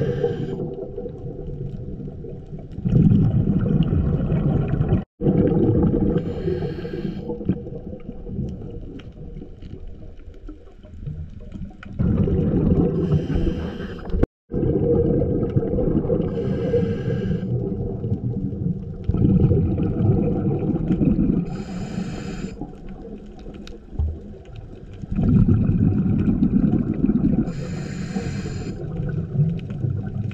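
Scuba diver breathing through a regulator underwater: a short hissing inhale every five to seven seconds, each followed by a longer low rush of exhaled bubbles. The sound cuts out briefly twice.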